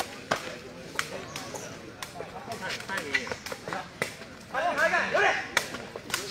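Sharp smacks of a sepak takraw ball being kicked back and forth in a rally, several strikes a second or so apart, over voices of onlookers; about four and a half seconds in, voices break into shouting for about a second.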